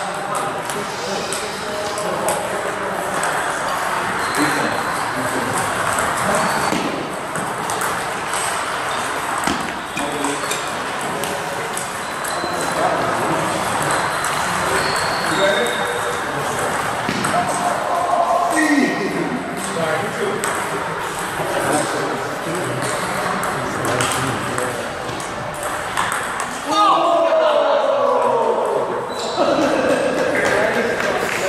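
Table tennis balls clicking off paddles and the table, repeated sharp pings over a steady background of voices in a large hall. A louder stretch with sliding pitches comes near the end.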